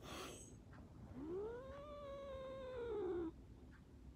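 Domestic cat giving one long, drawn-out meow of about two seconds, starting about a second in, rising and then falling in pitch before cutting off. A brief breathy noise comes just before it at the start.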